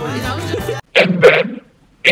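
Background music with guitar cuts off abruptly just under a second in, followed by a short, loud vocal burst from a person.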